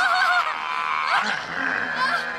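Shrill, wavering shrieks, several overlapping, in a horror-film fight.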